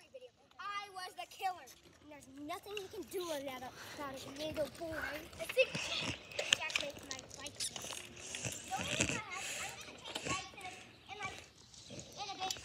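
Children's voices in the background, talking and calling out quietly, with a few short clicks and knocks mixed in.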